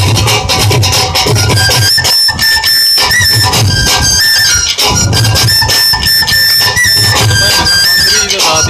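Folk instrument ensemble playing: drums beat a steady rhythm throughout, and from about two seconds in a high flute-like wind instrument plays a melody of held notes that step up and down in pitch over them.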